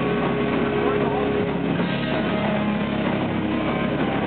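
Rock band playing live at loud volume, with distorted electric guitar sustaining droning held notes over the drums.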